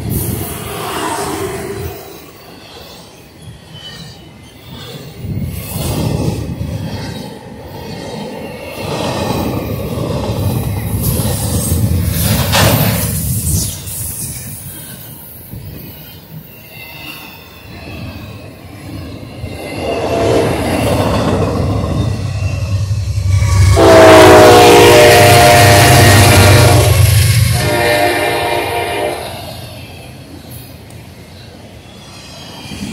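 Double-stack intermodal freight train rolling past close by, its wheels rumbling and clattering over the rails, with a brief high wheel squeal about halfway. In the last third a locomotive's multi-chime air horn sounds: a long loud blast, then a shorter one near the end.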